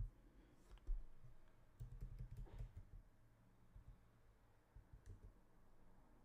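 Faint computer keyboard typing: scattered key clicks, with a short run of them about two seconds in.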